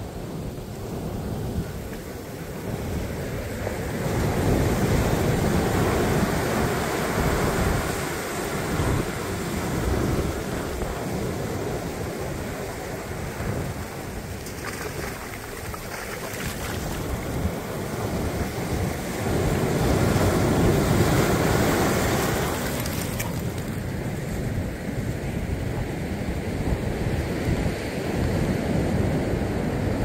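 Ocean surf breaking and washing over the shallows in a steady rush of foam. It swells louder twice, about four seconds in and again around twenty seconds in, as larger waves come through.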